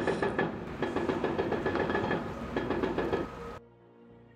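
Rapid, continuous hammering of an excavator-mounted hydraulic breaker chipping away a concrete abutment edge. It cuts off abruptly shortly before the end.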